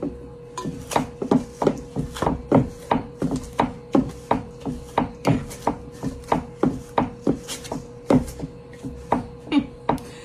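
Old hand pastry blender, a little loose, chopping cold butter into flour and striking the bottom of an enamel bowl in a steady rhythm of about three strokes a second.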